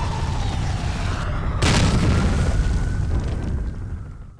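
Explosion sound effects: a deep rumbling boom, with a second sharp blast about one and a half seconds in, the rumble fading away near the end.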